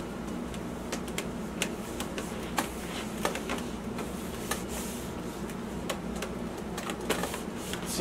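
Hands pressing and smoothing a stick-on protective pad onto the plastic shell of a Ninebot One Z10 electric unicycle: scattered light clicks and taps, several a second, over a steady low hum.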